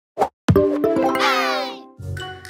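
Cartoon's opening logo sting: a short pop, then a held musical chord with a quick sweeping high flourish over it, fading out near the end.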